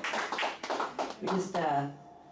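Audience clapping, sharp and quick, with voices over it, giving way to a person speaking near the end.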